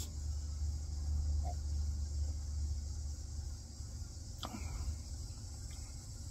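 Steady high chirring of insects in the background, with a low rumble through the first four seconds or so and a brief soft sound about four and a half seconds in.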